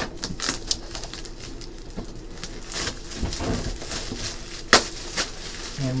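A cardboard box and its plastic wrapping being handled and opened: rustling and scraping with scattered clicks, and one sharp knock a little more than a second before the end.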